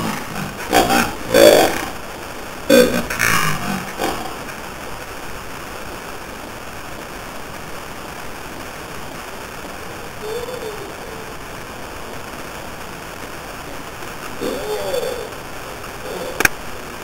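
A few short vocal sounds in the first few seconds, not clear words. Then a steady hiss of room and microphone noise, with two brief faint vocal sounds, one about ten seconds in and one near the end.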